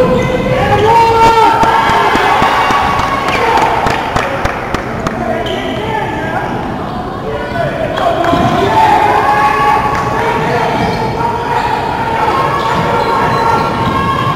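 A basketball bouncing on a hardwood gym floor during play, with a run of quick dribbles a few seconds in, under continuous shouting and chatter from players and spectators.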